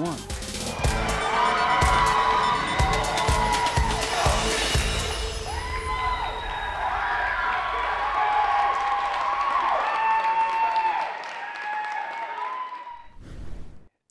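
Cheering and shouting voices at a live cheerleading routine in a gym, over music. It fades out over the last few seconds.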